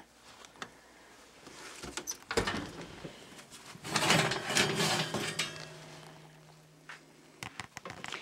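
Knocks and clatter of a metal baking sheet of cookies being taken out of the oven, loudest about four to five seconds in, followed by a low steady hum for about two seconds.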